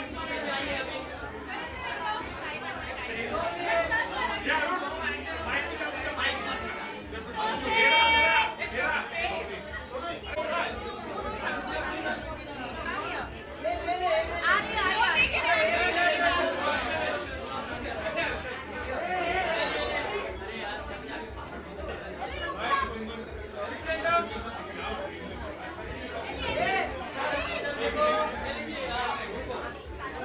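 Overlapping chatter of many people talking at once, with no single voice clear. One voice calls out loudly about eight seconds in, and the talk grows louder around fifteen seconds.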